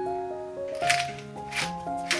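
Pepper mill grinding black pepper in two short bursts, about a second in and again near the end, over background keyboard music.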